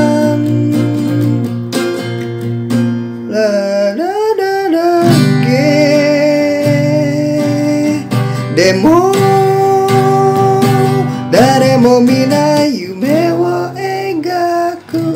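Acoustic guitar strummed through a slow chord progression (F minor, A minor, B-flat, G) with a man singing the Japanese melody along in long held notes.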